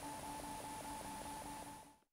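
Faint room tone with a steady electrical hum made of two pitches, pulsing in short regular dashes, and a faint high whine; it fades out to silence near the end.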